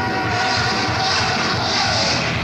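Heavy metal band playing live on a raw bootleg tape: a dense, steady wash of distorted guitar and drums with held guitar notes, and cymbals swelling louder near the end.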